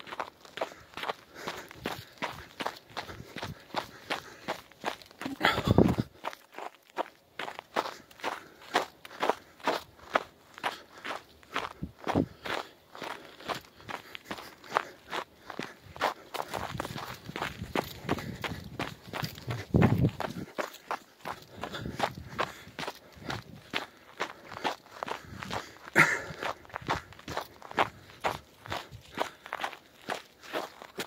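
Footsteps crunching on a snow-covered trail, quick and even at roughly two to three steps a second, with a few louder low rumbles along the way.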